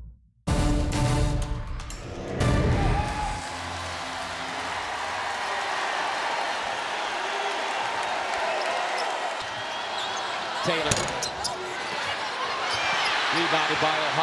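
A brief broadcast transition sting with music lasting a few seconds, then steady arena crowd noise during basketball play, with a ball being dribbled and sneakers squeaking on the hardwood court near the end.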